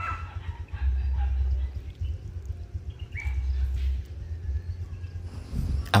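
Rural yard ambience: distant chickens calling faintly now and then over a low, uneven wind rumble on the microphone.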